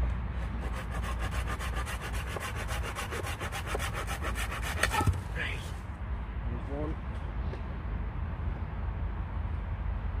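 A hand saw cutting through a small branch with quick, even strokes, ending in a sharp crack about five seconds in as the piece snaps off.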